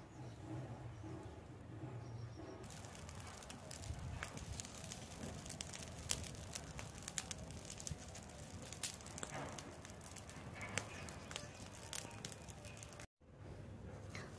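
Pile of dry leaves burning, crackling with many small sharp pops. The crackling starts suddenly about three seconds in and cuts off abruptly near the end.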